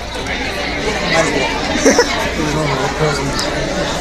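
Indistinct chatter of several people's voices in the background, with no one voice standing out.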